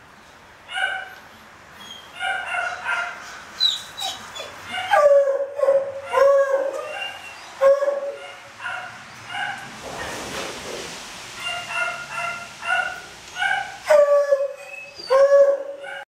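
Dog barking repeatedly in short, high calls, with a few longer, drawn-out calls that dip in pitch around five to seven seconds in and again near the end.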